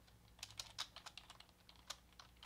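Faint, quick typing on a computer keyboard: about a dozen light keystrokes in a row.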